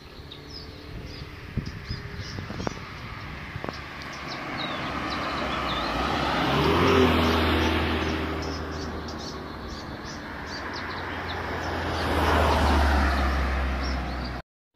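Motor vehicles passing close by on a road, one about seven seconds in and another near the end, each rising and then fading with a low engine hum. Birds chirp in the first half.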